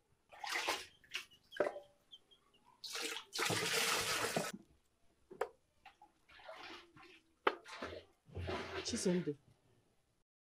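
A woman's wordless, breathy hisses and grumbles come in several short bursts. The longest and loudest is about three to four seconds in, two sharp clicks fall between them, and a voiced grumble comes near the end.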